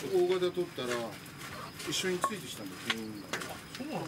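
Indistinct voices of people talking near the bench, with a few sharp clicks between about two and three and a half seconds in.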